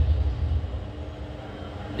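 Low, steady rumble of room noise picked up through the microphone in a pause between spoken phrases. It is strongest at first and eases off about half a second in.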